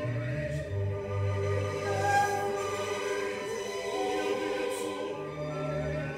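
Opera choir singing with orchestra in held, sustained chords, played from a vinyl LP on a turntable.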